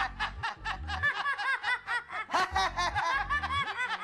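A group of people laughing together, with rapid, repeated bursts of laughter throughout.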